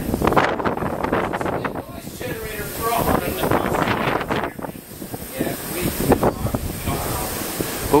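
Wind buffeting the microphone high on an open tower, with indistinct voices talking in snatches.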